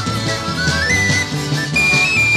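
Tin whistle playing a fast, ornamented folk melody over a band's drums and bass, in an instrumental passage with no singing.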